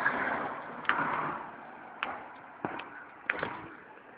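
A handheld phone microphone picking up irregular soft knocks and rustling as the phone is handled while its holder walks along a pavement. The noise fades over the few seconds, with a few separate knocks.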